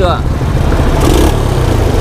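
Small engine of a homemade scrap-built mini car idling, a steady low rumble.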